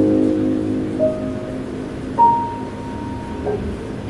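Solo piano playing slowly: a chord rings and fades, then a single note sounds about a second in and a higher note is held from about two seconds in until near the end.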